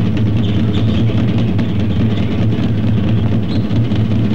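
A steady, loud low rumbling drone with no clear beats or notes, holding an even level throughout.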